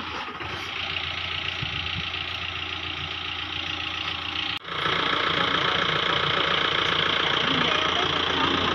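Engine of a parked SUV idling steadily. About halfway through the sound drops out for a moment, then comes back louder.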